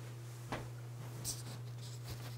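A person getting up from a desk chair and moving away: a soft knock about half a second in and brief rustles of clothing and chair, over a steady low hum.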